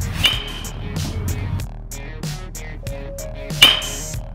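Background music with a steady beat, over which a baseball bat strikes a pitched ball twice: once just after the start and once, louder, near the end, each hit followed by a short ringing ping.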